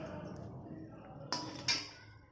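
Two sharp metal clinks less than half a second apart, the second the louder, of a steel slotted spoon striking a steel kadhai, with a short ring after them. Under them, a faint, fading sizzle of gujiyas deep-frying in oil.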